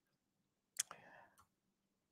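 Near silence, broken by one faint, sharp click about three-quarters of a second in, followed by a brief faint breathy noise.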